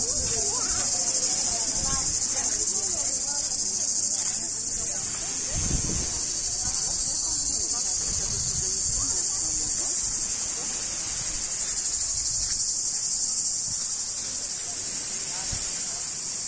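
Steady, high-pitched chorus of cicadas running without a break.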